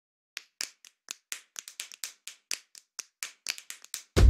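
A run of about twenty short, sharp clicks, irregularly spaced and coming closer together near the end.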